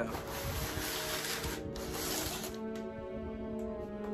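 Background music with steady held tones. Over it, a cardboard shipping box is handled and rustled for the first two and a half seconds, with one sharper scrape in the middle.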